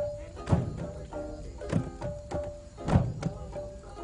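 Nyabinghi hand drumming: a deep bass drum strikes heavily about every 1.2 s while lighter drum strokes fill the beats between. A faint held tone sounds over the drums.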